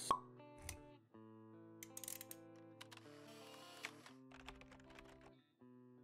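Quiet intro jingle for a logo animation: soft sustained synth notes, with a sharp pop right at the start and scattered short clicks and a soft hiss as sound effects.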